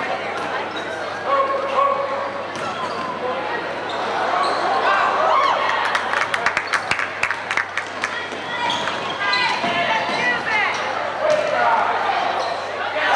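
Live high-school basketball game in an echoing gym: spectators' chatter with a ball bouncing on the hardwood court and short high squeals typical of sneakers on the floor. A quick run of sharp clicks comes about six to eight seconds in.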